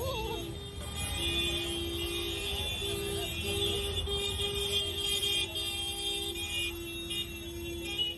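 Busy street traffic with a steady low rumble, and one steady-pitched horn sounding again and again in long and short blasts.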